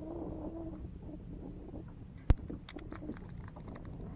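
Fishing reel clicking while a heavy hooked fish is played from a kayak: one sharp click a little past halfway, then about a second of quick faint ticks. Wind and water noise on the microphone run underneath, with a faint low hum in the first second.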